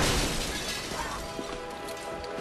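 Car side window smashed in: a loud crash of shattering glass at the start, fading into the tinkle of falling fragments. Film score music with held notes comes in under it about a second in.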